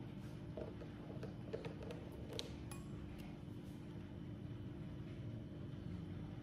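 A few faint clicks of chopsticks against a bowl as noodles are picked up and lifted, over a steady low hum.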